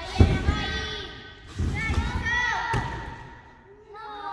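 Heavy thuds of a gymnast bouncing on a large trampoline, about one every second and a half, followed by her landing on the crash mat from a double front somersault that she does not stick.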